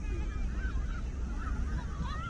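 High-pitched shouts and calls of children playing football, wavering in pitch, over a steady low rumble of wind on the microphone.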